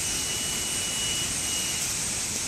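Steady rushing of a shallow river flowing over rocks, an even hiss with no rises or breaks.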